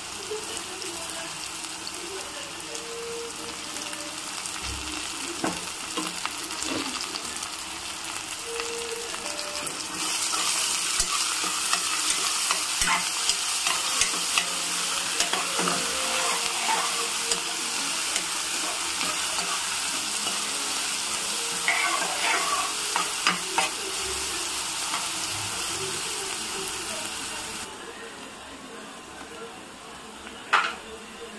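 Chopped onions and green chillies sizzling in hot oil in a pressure cooker, with a steel spoon scraping and clicking against the pot as they are stirred. The sizzle steps up louder about ten seconds in and drops back near the end.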